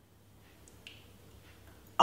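Quiet room tone in a pause, with one faint short click a little under a second in.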